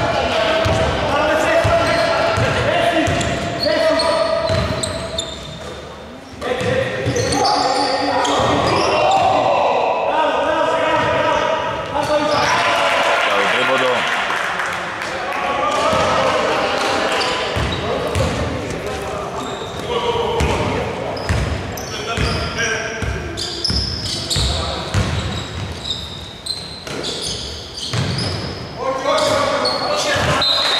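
A basketball being dribbled on a hardwood court, bouncing repeatedly, in a large echoing sports hall, with voices over it.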